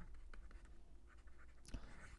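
Faint scratching of a stylus writing on a pen tablet, in a few short strokes.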